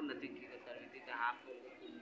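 Faint, indistinct voices of people in the background, with one brief higher-pitched wavering call about a second in.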